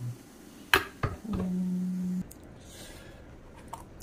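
Cut tomatoes dropped by hand into an empty plastic blender jar, making a couple of sharp knocks about a second in. A short, steady low hum follows for about a second.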